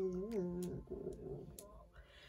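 A woman's voice wavering in a whimpering cry as she sobs, breaking off under a second in, followed by a shaky breath.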